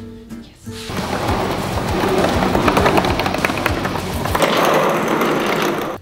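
3D-printed plastic penny board rolling on its printed wheels and bearings, a rattling rumble full of small clicks that starts about a second in and stops just before the end.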